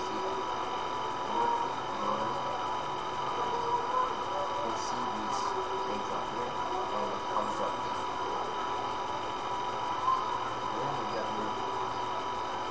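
Steady electrical hum and hiss with several fixed whining tones, under faint, indistinct background voices.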